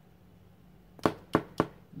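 Three sharp taps of a hard object, about a second in, roughly a third of a second apart.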